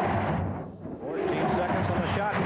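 A man talking, basketball commentary, over a steady arena crowd murmur. The voice pauses for a moment about half a second in.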